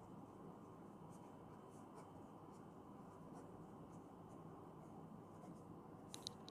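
Faint scratching of a pen writing on paper in short strokes, over a low steady room hum.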